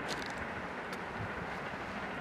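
Freight train moving away: a steady rumble of its wagons rolling on the rails, with a couple of faint wheel clacks.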